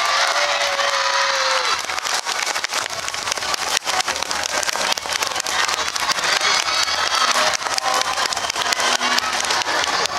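Street-parade din from a dance troupe: music under a dense, continuous clatter of claps, with a held shouted call in the first second and a half that falls away at its end.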